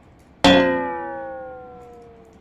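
A single loud metallic clang about half a second in, ringing on with a slightly falling pitch and dying away over about a second and a half: a comic sound effect.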